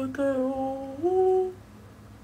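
A woman's voiced yawn, muffled behind her hands: held on one pitch, then stepping up higher about a second in before it stops. It is a sign of her sleepiness.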